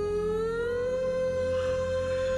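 A woman's singing voice holding one long note, sliding up in pitch about half a second in and then sustained steadily, over soft backing music.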